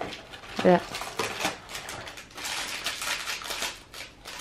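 Small clear plastic parts bag and cardboard advent-calendar box being handled, rustling and crinkling in a quick run of small crackles.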